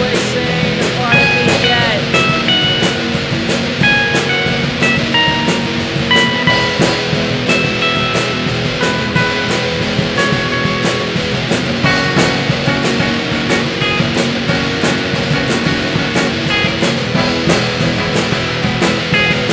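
Instrumental passage of a lo-fi indie pop song: guitars play a stepping melodic line over a steady drum beat.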